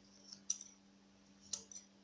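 Scissors snipping through yarn, trimming a crochet pompom: two short, faint snips about a second apart.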